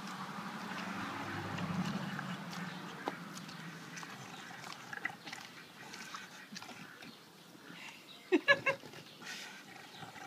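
A pig eating while lying down: low grunting in the first few seconds, then softer chewing with small clicks. A short, louder call comes about eight seconds in.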